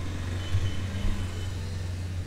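Steady low background hum picked up by a desk microphone, with no speech over it.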